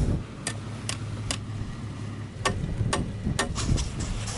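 A run of sharp clicks, about two a second: three early on, then four more after a short break, over a low steady hum.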